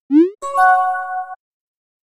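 Chat-app message sound effect: a short rising 'boing'-like blip, then a steady bell-like chime lasting about a second, as a new text message pops up.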